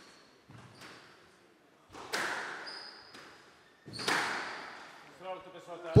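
Squash ball being struck by racquets and slapping the court walls, with two loud hits about two seconds apart that ring on in the enclosed court. Fainter knocks come early, and a short squeak of court shoes on the wooden floor falls between the two loud hits. These are the closing shots of a rally.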